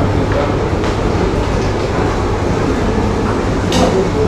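Steady rumbling background noise with a low hum, with a brief high click near the end.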